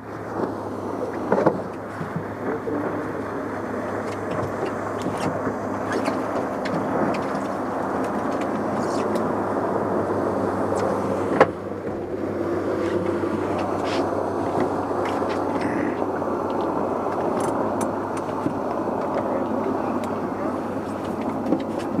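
Boat's outboard motor running steadily under way, with wind and water noise over it. A single sharp knock comes about eleven seconds in.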